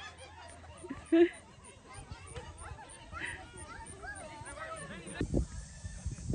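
Voices of people shouting and talking across an open field during a soccer game, with one short loud call about a second in. A low rumble comes in near the end.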